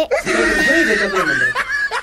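A boy laughing loudly in breathy, broken bursts.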